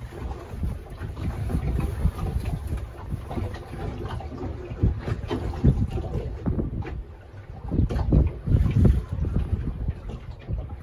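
Wind buffeting the microphone on a small boat in choppy water, with a gusty, uneven rumble. Irregular knocks come as the herring net is hauled in over the side.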